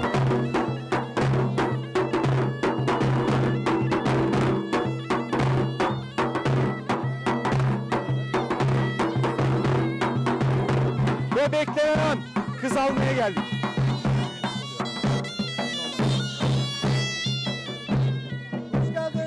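Davul bass drum and zurna shawm playing a lively folk dance tune. Dense, regular drum strokes run under a loud reedy melody, with a steady low note held beneath it.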